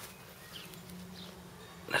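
Quiet outdoor background with a couple of faint short high chirps and a low steady hum lasting about a second near the middle; a man's voice starts right at the end.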